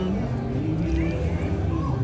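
Faint background voices over a steady low rumble.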